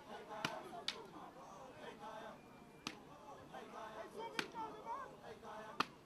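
Wooden fighting sticks striking during Zulu stick fighting: five sharp, separate cracks spread unevenly over a few seconds, with faint crowd voices underneath.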